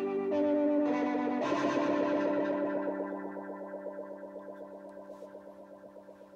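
Electric guitar played through an Idiotbox Effects 02-Resonant-19 Vibrato pedal. The chord changes twice in the first second and a half, and the last chord is left to ring and fade slowly with a fast, even vibrato wobble.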